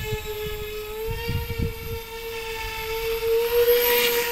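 Homemade 3D-printed bicopter's two electric motors and propellers whining steadily, the pitch rising slightly as the throttle comes up, with a swelling rush of prop wash near the end as it flies low and close. A few low rumbles come about a second in.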